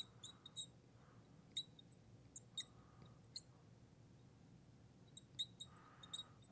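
Fluorescent marker squeaking on a glass lightboard as words are written: many short, high-pitched, irregular squeaks.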